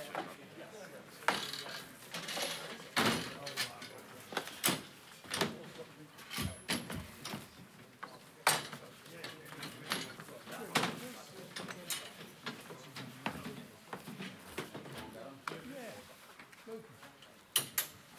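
Irregular knocks and clatters of a podium and folding table being lifted and moved on a stage, over a low murmur of people talking in the room.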